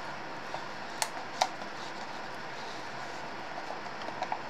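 Steady background hiss of room noise, with two light clicks a little under half a second apart about a second in.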